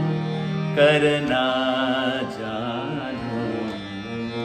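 Harmonium playing sustained chords under a man's wordless singing of the devotional bhajan. A held, wavering vocal line comes in about a second in and ends just after two seconds, and the harmonium carries on a little softer.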